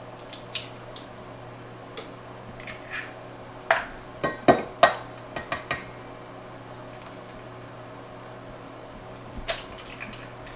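Eggs knocked and cracked against the rim of a stainless steel mixing bowl: a cluster of sharp knocks about four seconds in, a few lighter clicks before it and one more near the end.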